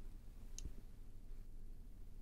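Quiet room tone with a low steady hum, and a single faint click a little over half a second in.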